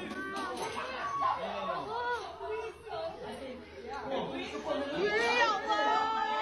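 Several people talking over one another, a murmur of chatter with no single clear voice.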